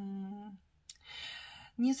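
A woman's closed-mouth hesitant "mmm", held on one pitch for about half a second, then a breath before she starts speaking again near the end.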